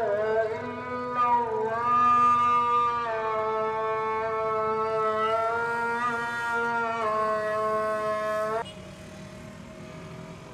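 A male voice over a mosque loudspeaker chanting the call to prayer: long held notes joined by short slides in pitch. It stops abruptly near the end, leaving the low hum of street traffic.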